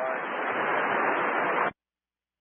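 Air-traffic-control VHF radio hiss: a steady, narrow-band rush of static from an open transmission, with a faint voice barely showing through it. It cuts off suddenly into silence near the end as the transmission drops.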